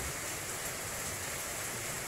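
Steady, even hiss of room tone and recording noise.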